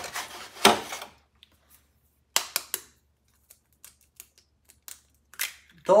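An egg tapped and cracked on the rim of a blender jar: several sharp, separate clicks and cracks of the shell.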